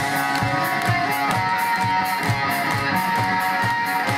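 Live rock band playing an instrumental passage: electric guitars over bass and drums, with held guitar notes over a steady beat.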